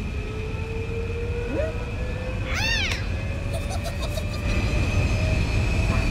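Cartoon sci-fi sound effects: a steady low rumble under a high steady tone and a thin whine that rises slowly in pitch. A short squeak comes about a second and a half in, and a brighter arched chirp follows about a second later, like a small creature's squeaky call.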